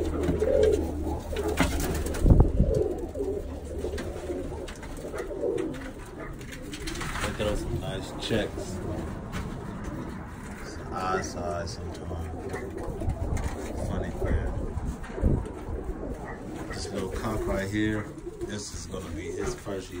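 Birmingham roller pigeons cooing, low repeated coos, with a few knocks, the loudest about two seconds in.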